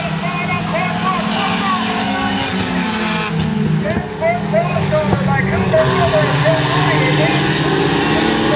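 Pure stock race cars' engines running together as the pack laps a short oval track, with several engine notes overlapping and shifting.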